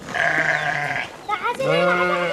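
A flock of sheep bleating: one loud bleat lasting about a second right at the start, then a second bleat near the end.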